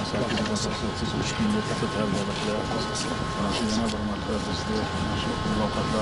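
Indistinct voices of several people talking close by, over a steady outdoor rumble.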